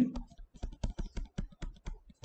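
Stylus clicking and tapping against a tablet screen while handwriting, a quick run of light clicks at about seven a second.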